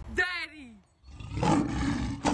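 A short voice call falling in pitch, then, after a brief gap, about a second in, a loud lion roar sound effect begins and carries on.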